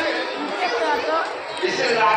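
Crowd chatter: many voices talking at once in a large crowd.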